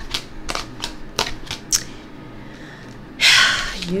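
Tarot cards being handled on a table: a run of about half a dozen light, sharp clicks and taps of card stock over the first two seconds, then a short, louder rush of noise near the end.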